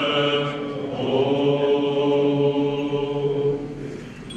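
Male voices singing Byzantine chant, long held notes over a low sustained note, fading out near the end.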